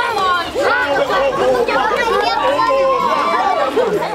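A crowd of many voices talking and calling out over one another in loud, continuous chatter.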